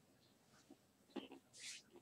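Near silence, with a faint snippet of a voice a little past a second in and a soft hiss near the end.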